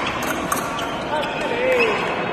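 Fencers' footwork on a metal piste: sharp stamps and shoe squeaks during an exchange, with a short voice call in the second half.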